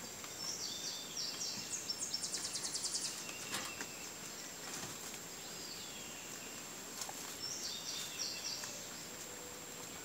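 A songbird sings twice. The first phrase of high chirps ends in a fast trill of about ten notes a second, and a shorter phrase comes near the end. A steady high insect whine runs under it, with a few soft clicks from rabbits chewing leaves.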